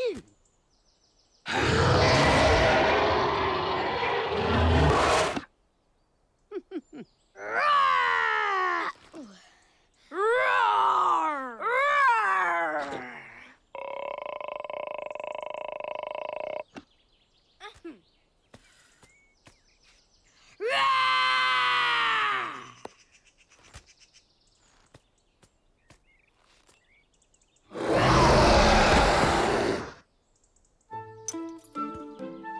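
Voice-acted cartoon dragons roaring one after another, practising their roars. There are two loud, rough roars, one early on and one near the end. Between them come shorter calls that swoop up and down in pitch, and one steady held note about halfway through.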